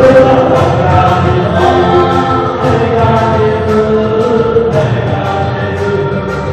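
Group of voices singing a thanksgiving song to amplified music with a steady beat.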